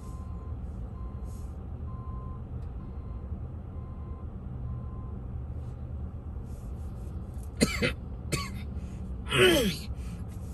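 Steady low engine and road rumble of a flatbed tow truck and surrounding traffic moving through an intersection, with faint short beeps in the first half. A person's voice makes a few short sounds near the end.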